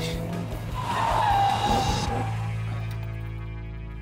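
Mark 1 Volkswagen Golf GTI's tyres squealing and skidding for about a second and a half as the car is thrown into a handbrake turn, the squeal dropping slightly in pitch before fading out. Steady background music runs under it.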